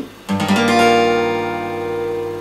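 Steel-string acoustic guitar, capoed at the third fret, strummed once in a quick sweep about a third of a second in, through a C add9 chord shape. The chord is left to ring and slowly fade.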